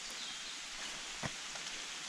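Steady rain falling, an even hiss, with one faint tap a little past the middle.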